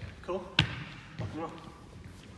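A single sharp thud about half a second in, between short bits of men's speech.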